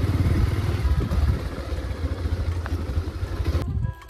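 Motorcycle engine running as the bike rides along a rough dirt road, a strong low pulsing rumble under steady wind and road noise. It cuts off suddenly near the end.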